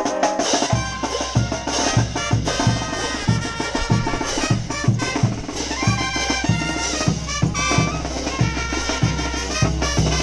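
Live brass band with drums playing dance music: sustained trumpet-led brass lines over a steady bass-drum beat of about two or three strokes a second. The bass drum drops out briefly at the start and comes back in under a second in.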